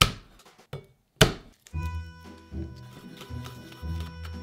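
Hand smacking down on the flat of a chef's knife to crush a garlic clove on a wooden cutting board: a sharp smack at the start and another just over a second in, with a smaller knock between. Background music with a steady beat then starts and carries on.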